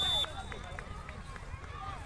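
A single short blast of a referee's whistle right at the start, a steady high note, then distant shouts and voices of players and spectators.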